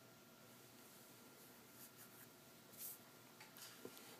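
Near silence with a few faint, short rustles of thin catalog paper being handled, the clearest a little before three seconds in, over a low steady hiss.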